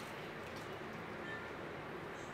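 Faint, steady background noise of a quiet kitchen room, with no distinct event.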